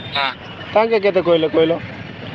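Speech only: a man talking in short phrases over a telephone line, the voice thin and band-limited.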